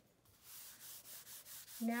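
A graphite pencil rubbing across drawing paper in about five quick strokes, a soft hiss.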